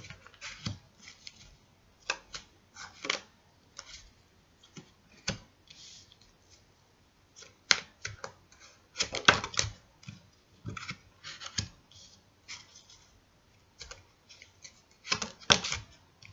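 A tarot deck handled and shuffled by hand, cards snapping and sliding, some laid down on a cloth-covered table: irregular clicks and short rustling flurries, busiest about nine seconds in and again near the end.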